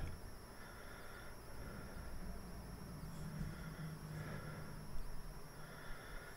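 Quiet room tone: faint background hiss and a faint low steady hum, with no distinct sound event.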